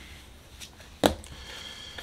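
A tarot card laid down on the reading cloth: one sharp snap about a second in, with a softer tick of handling just before it.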